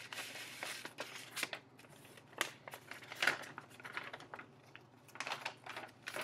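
Paper envelope being opened and a folded sheet of paper pulled out and unfolded: irregular crinkling and rustling with sharp little crackles.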